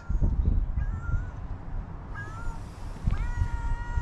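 Domestic cat meowing as it walks up: two short meows, then a longer, steady meow starting about three seconds in, over a low rumbling noise.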